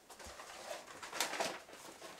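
Magazines rustling and sliding as they are picked up off a concrete floor, with two sharper paper crackles a little after a second in.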